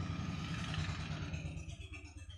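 A pause in amplified speech: the voice's echo dies away in a large hall over the first second and a half, leaving a low steady hum.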